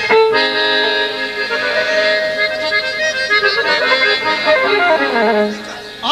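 Live accordion playing the opening of a Bosnian folk song: sustained chords, then a descending run near the end that settles on a low note.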